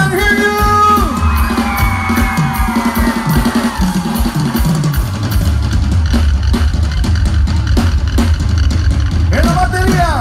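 A Tejano band playing live over a loud PA: a drum kit and bass keep a steady beat. A held note slides slowly downward over the first few seconds.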